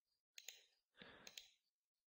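Near silence with a few faint computer mouse clicks in the first second and a half, as text is selected and copied through a right-click menu.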